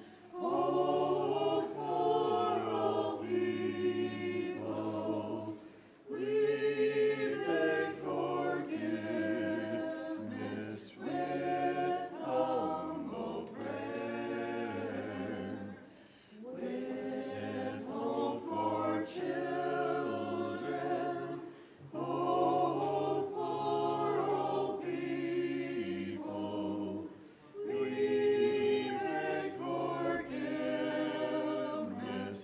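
Voices singing liturgical chant together a cappella in parts, with a low line held under higher voices. The singing comes in phrases broken by short breaths about every five or six seconds.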